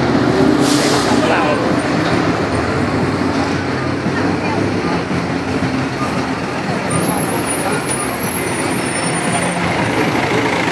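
Loud, steady city-street traffic of heavy vehicles such as buses and trucks running, with a short air-brake-like hiss about a second in. People's voices sound in the background.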